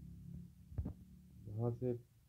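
Low steady hum with a single soft thump a little under a second in.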